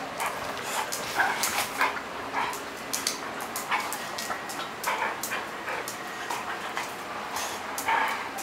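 Two dogs, a yellow Labrador retriever and a smaller dog, play-wrestling, with many short whines and yips and scuffling clicks.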